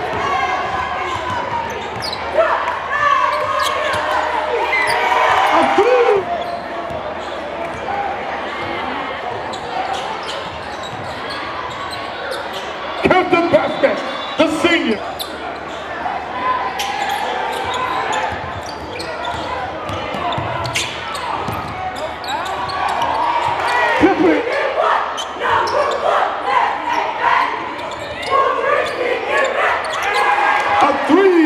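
Basketball being dribbled on a hardwood gym floor, with a crowd's voices and shouts filling the hall.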